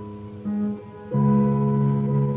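Solo piano playing held notes: a softer note about half a second in, then a fuller chord struck just past a second in and held.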